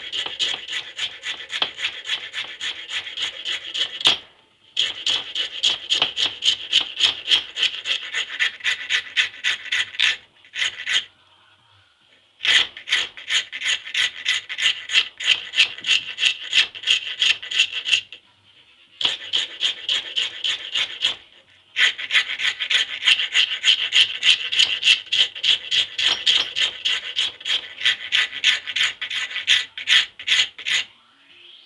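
Flat hand file rasping back and forth across a Burmese blackwood pistol grip blank held in a vise, in quick, even strokes several a second. The strokes come in long runs broken by a few short pauses.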